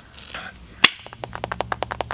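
A single sharp click, then a quick run of light taps, about a dozen in a second, over a faint low hum.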